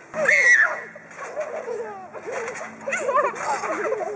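Overlapping voices of children and a man on a trampoline: excited calls and chatter that keep going, loudest with a high call in the first half second.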